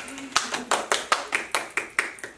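Four people clapping their hands together at a table, quick uneven claps overlapping, with some laughter.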